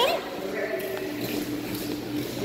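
Pool water splashing and churning as a dog enters and paddles, over a steady low hum.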